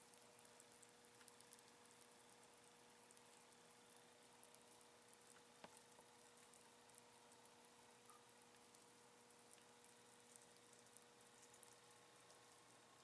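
Near silence with a faint, fine crackling fizz from Klean-Strip chemical paint stripper foaming and lifting the paint off a diecast metal car body, over a steady low hum.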